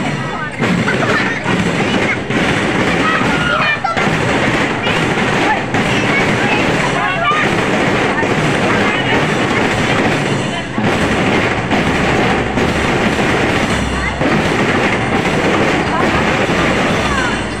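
Marching drum and lyre band playing as it passes: snare and bass drums beating a steady cadence with lyres (marching glockenspiels) over it, mixed with voices.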